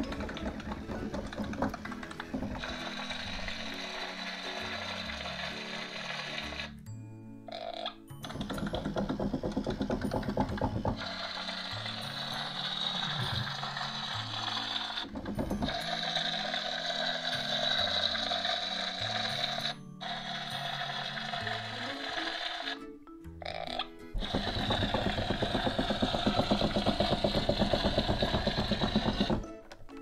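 Background music over the small motor and gears of a battery-powered walking plush toy (Disney Frozen 2 Walk and Glow Bruni) running with a rhythmic mechanical clatter. The clatter is louder about eight to eleven seconds in and again near the end.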